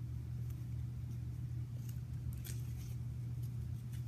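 A cloth boxing hand wrap rustling faintly as it is wound around the wrist, with a couple of soft scuffs about two seconds in, over a steady low hum.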